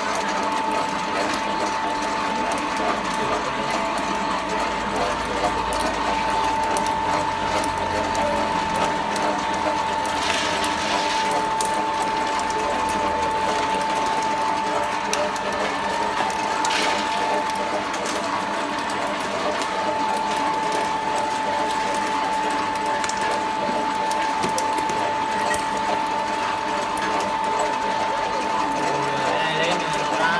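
Belt-driven industrial screw oil press running steadily under load, its geared drive and pressing screw giving a constant mechanical clatter with a steady tone.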